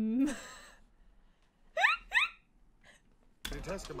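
A person laughing: a held, drawn-out laugh sound ends with a breathy exhale, then come two short, high squeaks that rise sharply in pitch about half a second apart. Speech starts near the end.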